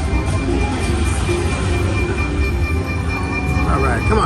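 Aristocrat Buffalo Triple Power video slot machine playing its reel-spin music and sound effects, with short electronic notes and chirping effects near the end as the reels land. Under it is the steady din of a busy casino floor.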